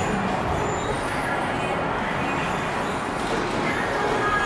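Steady noise of a Schindler passenger elevator travelling in its shaft, heard from inside the cab, with faint voices near the start.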